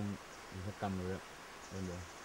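A man speaking in a low voice. Faint, high insect chirring pulses in the background near the end.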